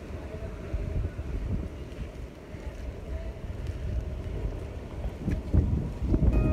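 Wind blowing across a handheld microphone, a low rumble that rises and falls in gusts, with sea surf in the background.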